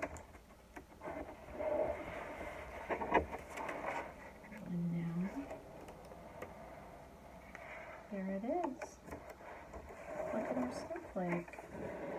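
Thin cut paper rustling and crinkling as a folded paper snowflake is slowly opened out by hand, with a few light ticks of paper against the table. A woman makes several short wordless hums around the middle and toward the end.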